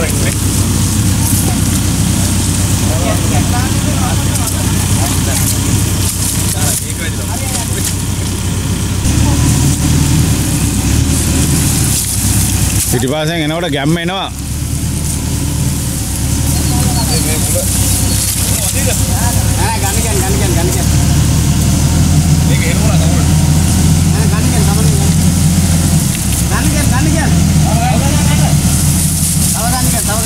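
Diesel engine of a backhoe loader running steadily, its note shifting up about nine seconds in and changing again near the end, with men calling out over it.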